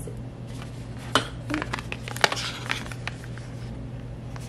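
Beaded cell phone strap being handled on its cardboard packaging card: small clicks and rattles of the beads and light rustling of the card, the sharpest click a little past two seconds in. A steady low hum runs underneath.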